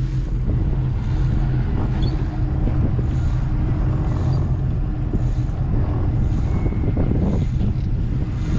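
Charter fishing boat's engine running steadily at trolling speed, a low, even drone.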